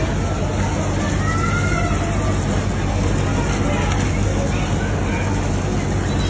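A steady low mechanical hum with indistinct voices chattering in the background.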